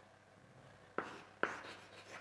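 Chalk on a blackboard: two sharp taps of the chalk striking the board about half a second apart, in the second half, as it writes.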